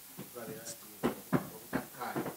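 A voice, with three sharp knocks in the second half; the middle knock is the loudest.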